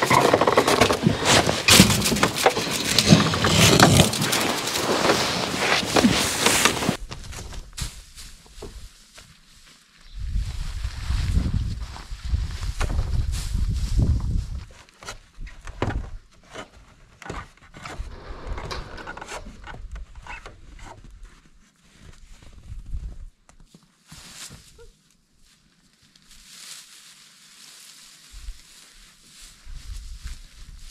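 Dense crackling and rustling for the first several seconds, then a low rumble, then scattered knocks and scrapes as a person climbs a wooden ladder up a barn wall to the hayloft.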